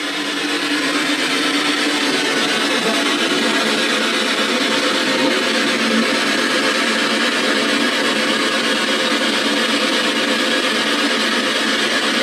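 Ghost-hunting spirit box sweeping the radio band, giving a steady rush of static.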